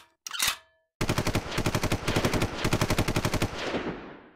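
A sustained burst of automatic gunfire, about ten rounds a second, starting abruptly about a second in and lasting nearly three seconds before trailing off in a fading echo.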